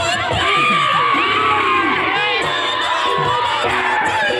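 A large crowd cheering and shouting, many voices overlapping, with one long high call held for a couple of seconds near the start.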